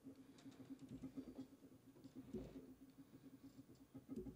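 Near silence: room tone with a faint steady low hum and a few faint clicks.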